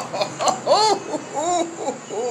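A man laughing and exclaiming with delight in a few short vocal sounds, each rising and then falling in pitch.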